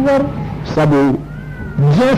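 A man's voice in drawn-out, wavering syllables, with a short pause a little past a second in before the voice resumes.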